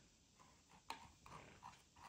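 Near silence: quiet room tone with a few faint, short clicks, the sharpest about a second in, as a web page is scrolled on a laptop.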